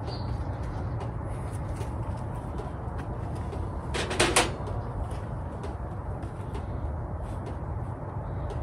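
Faint clicks from a thin wire garden stake being handled and bent by hand, over a steady low background rumble, with one short creak about four seconds in.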